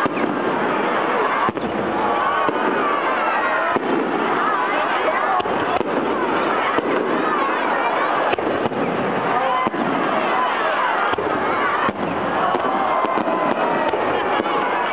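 Aerial fireworks bursting overhead with scattered bangs and crackles, under the continuous talking and calling of a crowd of onlookers.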